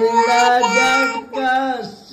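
A small child singing drawn-out, wavering notes in two phrases, with a short break for breath about two-thirds of the way through.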